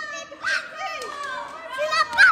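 Young children's high-pitched voices and squeals, with a louder squeal about half a second in.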